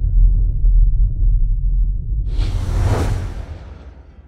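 Closing soundtrack sound design: a deep, low rumble under a whoosh effect that swells up a little past two seconds in, peaks, then fades as everything dies away near the end.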